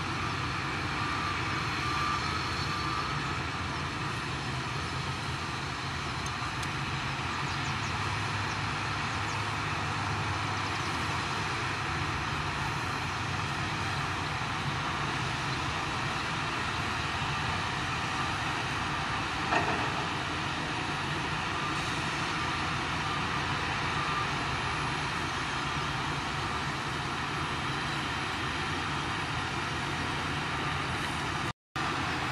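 Shantui DH17C2 crawler bulldozers' diesel engines running steadily under load as they push mud and dirt, with one sharp knock about two-thirds of the way through.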